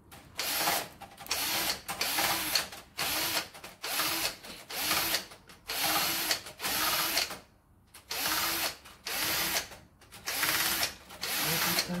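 Cordless power driver tightening circuit-breaker terminal screws in a series of short bursts, each under a second, its motor winding up and down each time, about a dozen in all with a longer pause about halfway through.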